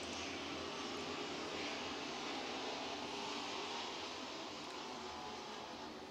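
A field of dirt-track super trucks racing at speed: a steady, even engine drone that eases slightly near the end.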